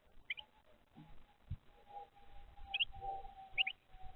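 A bird chirping: three short, high double chirps, one early, one near three seconds and one just after. A soft knock comes in between, and a steady faint tone sets in about halfway through and holds.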